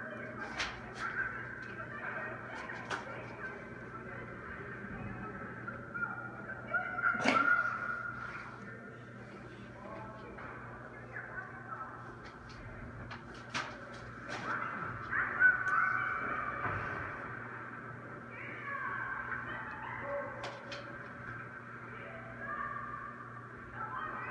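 Echoing ice-rink session: distant voices calling out, with scattered sharp clacks of hockey sticks and pucks. The loudest clacks come about seven seconds in and again around fifteen seconds.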